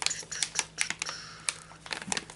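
Plastic dog-treat pouch crinkling and clicking as it is handled, a string of irregular short crackles.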